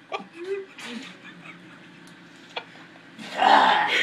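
A man drinking from a bottle, quiet for most of the time, then a loud breathy gasp near the end as he comes off the bottle after gulping straight lemon juice.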